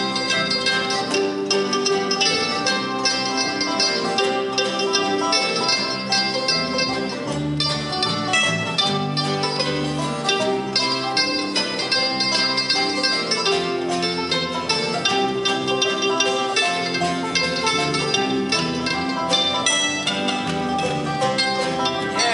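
A live bluegrass band playing an instrumental break, with acoustic guitar and banjo picking over a steady rhythm.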